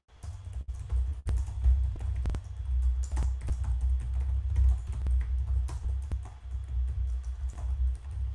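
Irregular sharp clicks, like typing on a computer keyboard, over steady low, bass-heavy background music.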